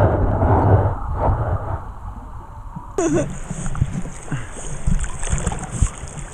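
River water heard through a camera held underwater: muffled rushing and bubbling. About halfway through, the camera breaks the surface and the sound opens into the hiss of the flowing current and splashing around a swimming dog.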